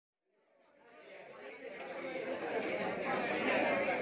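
Chatter of many voices from students in a lecture hall, fading in from silence about a second in and growing steadily louder.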